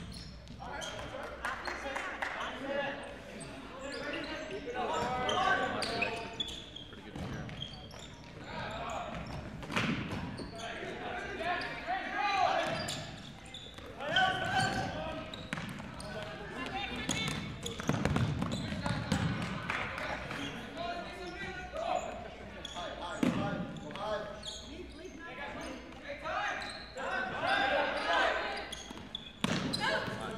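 Futsal game in a gymnasium: players and spectators calling out in voices too indistinct to make out words, with occasional sharp thuds of the ball being kicked and hitting the hardwood floor.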